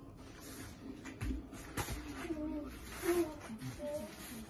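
A baby's short babbling vocal sounds, with two soft thumps about a second in and again half a second later.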